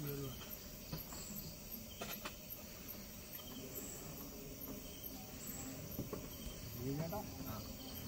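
Crickets chirping steadily at night, a faint high pulse about three times a second, with a couple of sharp knocks.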